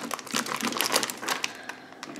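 Clear plastic sausage package crinkling as cocktail sausages are squeezed out into a ceramic slow-cooker crock: a quick run of small crackles and taps that thins out near the end.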